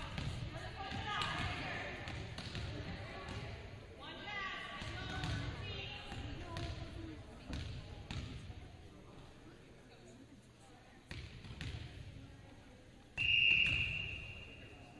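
Volleyball rally in a gym: voices calling, thuds of the ball being struck and hitting the floor, then near the end one loud, steady blast of the referee's whistle stopping play.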